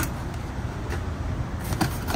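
Cardboard box and a paper-wrapped gasket being handled: a sharp click at the start, then a few light rustles, over a steady low rumble.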